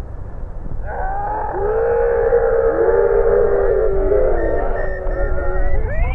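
Several players shouting and cheering together in long, drawn-out calls after a goal. The shout starts about a second in and is held for some five seconds.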